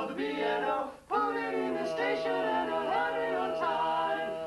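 Male voices singing a barbershop song a cappella in close harmony, holding sustained chords. They break off briefly about a second in, then come back in with one long held note over moving lower parts.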